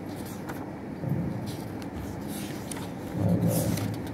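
Paper pages of a book being leafed through, with a louder rustle and handling bumps near the end, over a steady low background rumble.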